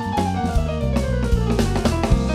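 Jazz trio playing live: a stage keyboard, an electric bass and a drum kit with cymbal and snare strokes. One high note slides slowly down in pitch across these seconds over the bass and drums.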